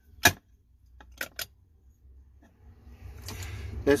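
Sharp clicks of metal starter-motor parts being handled and set down on a steel plate: one loud click about a quarter-second in, two lighter ones just past a second, then a rising rustle of handling near the end.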